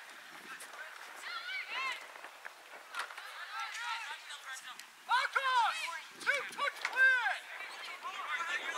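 High voices shouting and calling out across a soccer pitch during play, each call a short rising-and-falling cry. A couple of calls come in the first half; the calls grow louder and more frequent in the second half.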